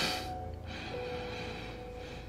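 Background score with long held notes, and a short sharp breath-like burst at the very start followed by a softer airy hiss.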